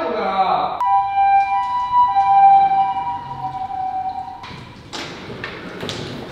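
A steady electronic tone of two held pitches, lasting about three and a half seconds and cutting off suddenly. Near the end, a sliding door rattles open with a few knocks.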